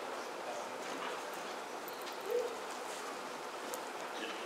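Low, steady room noise of a congregation moving about the sanctuary, with one short, low voice-like sound a little past halfway.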